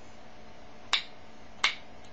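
Two sharp clicks from the twist dial at the base of a Sure Maximum Protection cream antiperspirant being turned, about a second in and again a little later. The dial is being wound round several times for first use, to push the cream up through the holes in the top.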